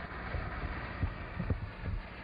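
Several irregular dull low thumps over a steady hiss: handling noise from a handheld camera being moved and knocked.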